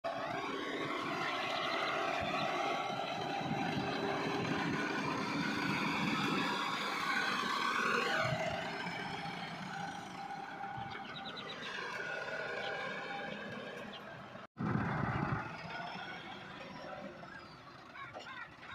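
Massey Ferguson tractor's diesel engine running under load as it pulls a five-tine cultivator through the soil. The sound drops out for a moment about fourteen and a half seconds in, then comes back louder.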